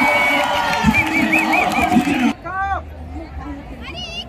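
Stadium crowd at a field hockey match cheering and shouting, with a held high tone and then a warbling one over the noise. A little over two seconds in the sound cuts off abruptly to a quieter crowd with scattered shouts.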